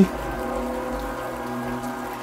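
Soft background music: a sustained, held chord of steady tones, under a faint even hiss.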